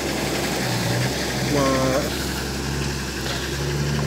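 Pickup truck engine running steadily at low speed as the truck drives past on a rough dirt road, with a short burst of a person's voice about a second and a half in.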